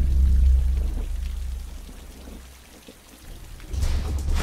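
Steady heavy rain falling, while a deep low music drone fades out over the first couple of seconds. A new low swell rises near the end.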